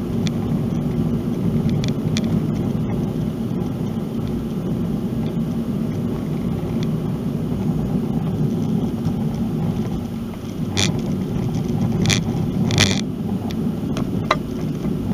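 Car driving slowly on a rough, patched road, heard from inside the cabin: a steady low road and engine noise, with a few brief knocks near the end.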